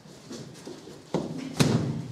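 A thud a little over a second in, then a louder, sharp knock about half a second later.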